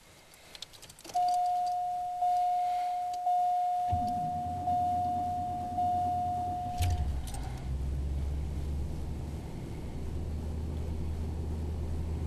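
Dashboard warning chime sounding about once a second while a 1991 Cadillac Brougham's V8 is started from cold about four seconds in; the chime stops about seven seconds in and the engine settles into a steady low idle.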